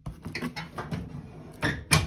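Steel tool-cabinet drawer slid shut on its ball-bearing runners, with a few light knocks and then a sharp metallic bang as it closes near the end.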